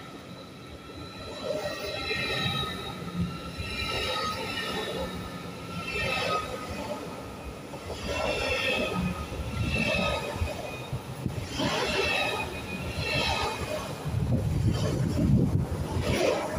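ICE high-speed electric train rolling slowly out of the station past the platform. Its wheels and bogies clatter by in swells every one to two seconds, over high steady tones in the first half. A deeper rumble swells up near the end.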